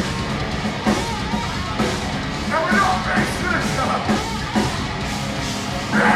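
Heavy metal band playing live: distorted electric guitars, bass and drum kit.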